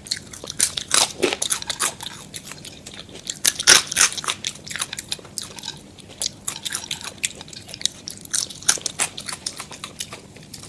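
Close-miked biting and chewing of crunchy KFC fried chicken breading and french fries, played back at double speed: a dense run of crisp crunches, loudest about four seconds in.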